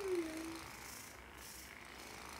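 A woman's brief wordless vocal sound, falling in pitch and lasting about half a second, like a strained sigh while stretching; after it, only faint room tone.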